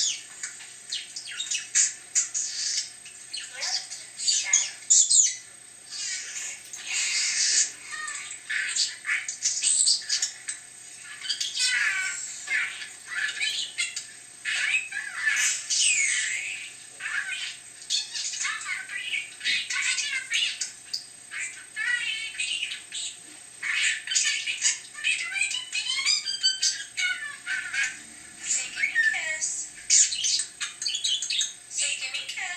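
Budgerigar warble: a long, nearly unbroken run of rapid chirps, squawks, trills and short whistles, coming from the budgie video on the phone's speaker, the live budgie, or both together.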